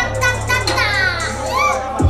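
Loud live hip hop music through a sound system with a steady deep bass, and several raised voices over it.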